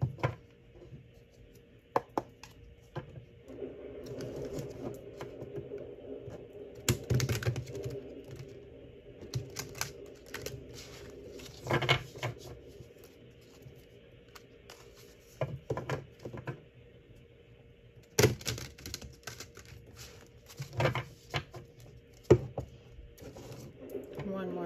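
A deck of tarot cards being shuffled by hand: irregular bursts of quick card flicks and taps, with short pauses between.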